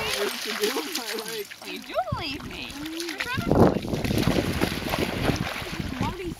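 Water splashing as a dog wades and swims through shallow lake water, louder in the second half. Voices talk during the first half.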